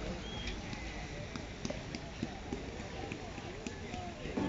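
Open-air ambience of a busy park plaza: distant, indistinct voices of people, with faint scattered taps and clicks.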